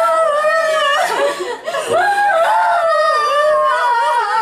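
Women wailing aloud in long, drawn-out cries, several voices overlapping and rising and falling in pitch, with a brief break just before two seconds in.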